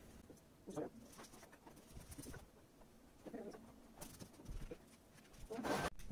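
Faint rustling of fleece sweatpant fabric being handled, with a couple of brief, soft vocal sounds; no sewing machine running.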